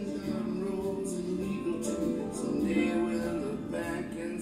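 Recorded music played back over the PA: a work-in-progress studio track, steady, with sustained pitched parts and a voice in it.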